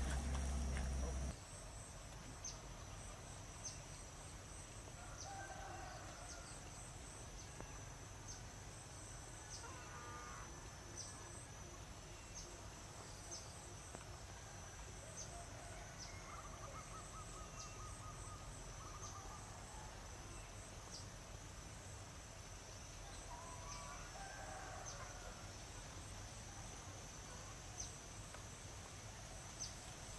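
Faint pond-side ambience: a steady high insect drone with a short chirp about once a second, and a few faint bird calls, one a short trill. A louder low rumble at the very start cuts off abruptly after about a second.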